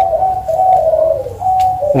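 A dove cooing in one long, slightly wavering call with a couple of brief breaks, ending just before the end.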